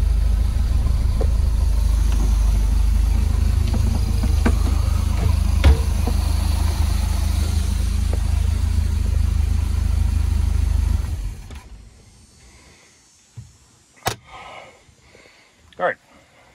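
A 180-horsepower MerCruiser boat engine running steadily while it is tested out of the water on a hose hookup. About eleven seconds in it is shut off and its sound dies away over about a second.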